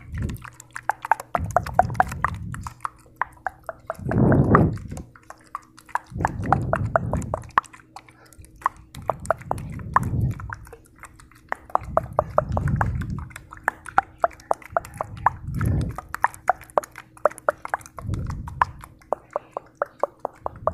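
ASMR trigger sounds close to the microphone: a dense run of small clicks and pops, with a soft whooshing swell every two to three seconds, over a faint steady hum.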